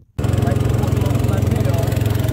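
Small boat engine running at a steady speed, a loud, evenly pulsing low hum that cuts in abruptly just after the start.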